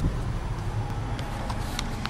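Steady engine and road noise of a moving car heard from inside the cabin, with a few faint clicks in the second half.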